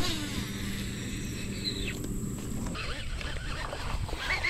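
A baitcasting rod cast, with a sharp swish at the start, followed by a steady low hum that stops about two-thirds of the way through.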